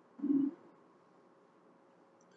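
A brief low hum, a closed-mouth "mm" from a man's voice, lasting about a third of a second just after the start.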